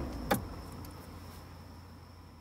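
The dying end of the track: a single sharp click with a quick falling sweep a moment in, then a low hum fading away.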